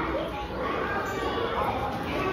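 Background chatter of children's and adults' voices, several people talking and calling out at once, in a busy indoor hall.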